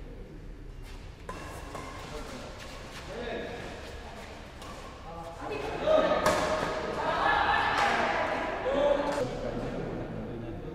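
Badminton doubles rally in a reverberant indoor hall: sharp racket strikes on the shuttlecock and thuds of players' feet on the court, then louder shouting voices over the last few seconds as the point is won.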